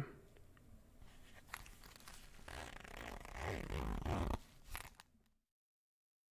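Close rustling and scraping, like handling noise near the microphone, that grows louder through the middle, with a few sharp clicks. It stops dead about five seconds in, leaving digital silence.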